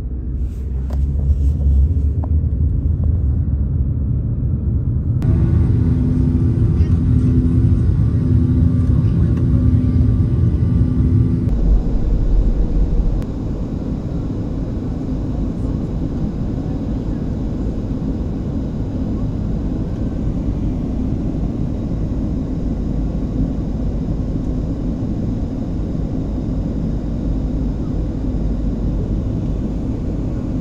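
Car driving: a loud low rumble of road and engine noise, changing abruptly about 5 and 11 seconds in.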